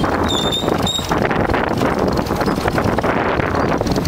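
A small motorbike running along a rough dirt track, with wind buffeting the microphone and steady knocks and rattles as it jolts over the bumpy ground.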